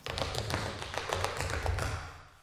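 Tap shoes striking a wooden floor in a quick, uneven run of taps during tap dancing.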